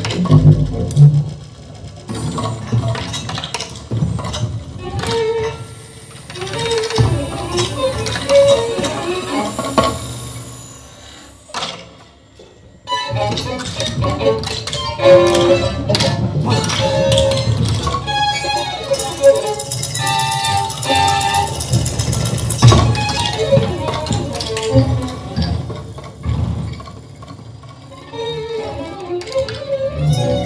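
Free improvised music for violin and percussion: bowed violin tones mixed with sharp percussive clicks and strokes. It thins out to a near-pause just before halfway, then comes back suddenly and carries on busy and dense.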